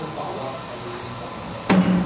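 A single sharp knock near the end, followed by a short ringing tone.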